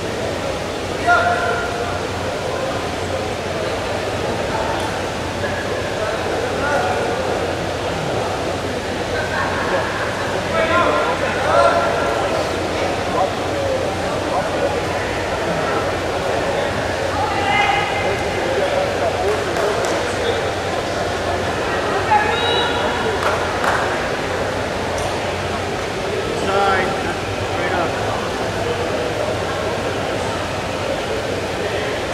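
Ambience of a large indoor arena: a steady crowd murmur with scattered voices calling out every few seconds.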